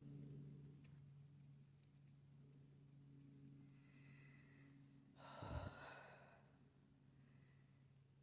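Near silence with a faint steady low hum, broken about five seconds in by one heavy breathy exhale, a sigh of effort from a hiker tired by the climb over rough ground.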